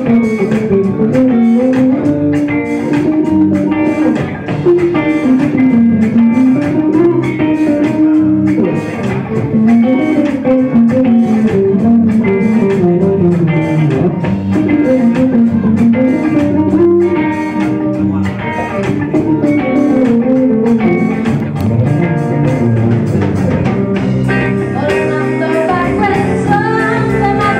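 Live rock band playing an instrumental passage: electric guitars, bass and drum kit, with a guitar melody that dips and climbs back in a repeating pattern over a steady beat.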